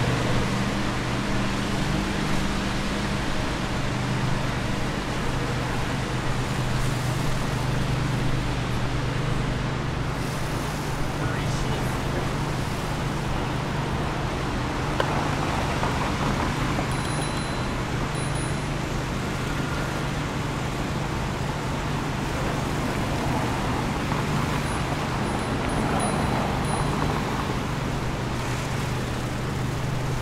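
City street traffic: a steady low hum under continuous road noise, with passing cars swelling past around the middle and again near the end.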